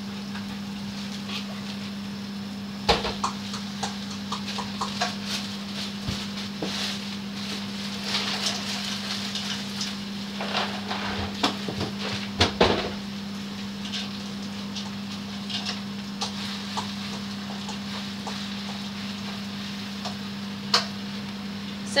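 Spinach leaves wilting in oil in a frying pan, with a quiet sizzle and a few sharp knocks and clatters of pan and utensils, the loudest about three seconds in and again around twelve seconds in. A steady low hum runs underneath.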